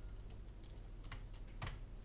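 A few keystrokes on a computer keyboard, separate clicks with the loudest about a second and a half in, as a space and a percent sign are typed.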